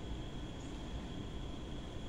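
Steady room noise: a low rumble and hiss with a faint, constant high-pitched whine, unchanging throughout.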